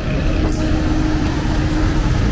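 Street traffic with a car driving past close by: a steady engine hum over a dense low rumble, with a brief click about half a second in.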